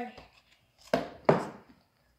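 Metal spoons stirring and scraping through a stiff flour dough in a stainless steel mixing bowl, with two short, sharp strokes against the bowl about a third of a second apart.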